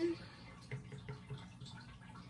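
A squeeze bottle of glitter fabric paint being squeezed into a plastic palette well, with a few faint, soft squelches of paint about a second in.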